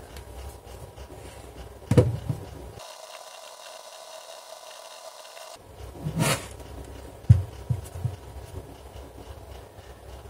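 Handling noise from a plastic router being picked up, tipped over and set back down on a desk: a sharp knock about two seconds in, a rubbing scrape about six seconds in, then a few light knocks a second or so later.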